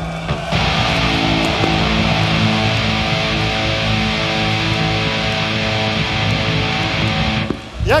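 Live metal band holding a sustained distorted chord on electric guitar and bass, with a steady wash of noise above it, cut off abruptly near the end.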